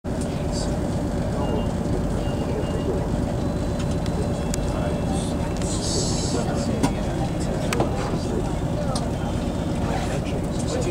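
Class 220 Voyager's underfloor diesel engine running under power as the train pulls away, a steady low drone heard from inside the carriage. Two short sharp clicks come about seven and eight seconds in.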